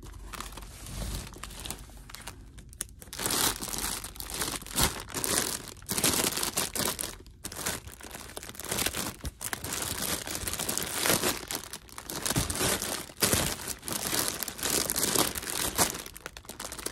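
Clear plastic bags crinkling and rustling as bagged items are shuffled around inside a cardboard box, in uneven spells that get busier from about three seconds in.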